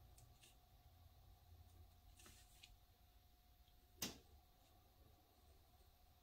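Near silence: quiet room tone with a faint low hum and a few faint ticks from a fine uni-ball Eye pen dotting on watercolour paper. One sharper click comes about four seconds in.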